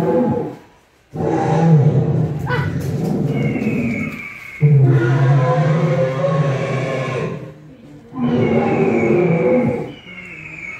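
Recorded dinosaur roars from an animatronic dinosaur's soundtrack: three long, loud roars with short gaps between them, the first starting about a second in.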